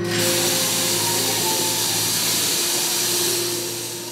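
A loud, steady hiss that starts abruptly and fades out after about three and a half seconds, with faint held musical tones underneath.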